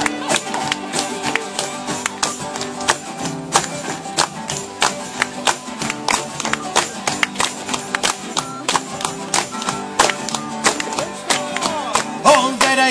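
Live acoustic folk band playing an instrumental passage without singing: acoustic guitar strummed in a steady, even rhythm over other string instruments.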